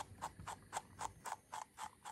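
Small slicker brush worked in short, quick strokes through the long wool of a Jersey Wooly rabbit's foot, a light scratchy stroke about four times a second, brushing out mats in the foot fur.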